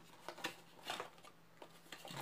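A few faint, short rustles and taps of a cardboard perfume box being handled and opened.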